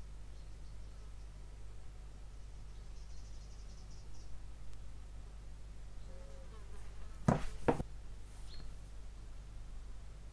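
A faint, steady low hum, with two sharp little clicks about half a second apart a little past seven seconds in, as fine metal tweezers handle a small photo-etched brass part.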